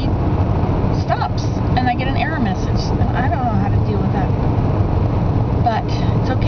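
Steady low rumble of a car's engine and road noise heard inside the cabin, with a woman's voice talking over it.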